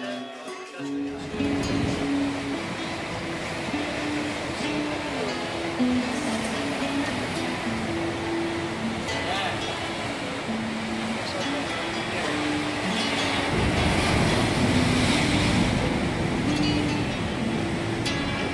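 Rough sea surf breaking and churning over rocks: a steady rushing wash that comes in about a second in and grows louder in the last third. Background music with a slow melody plays over it.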